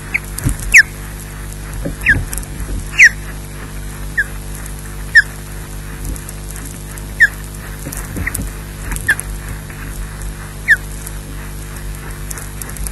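Osprey calling: a series of short, high whistles, each sliding down in pitch, about nine of them at irregular intervals, over a steady low electrical hum.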